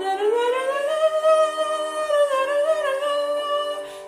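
A woman's soprano voice singing a melody line alone, without words. It glides up over the first second to a long held note, then dips a little and goes on, with a brief breath break near the end.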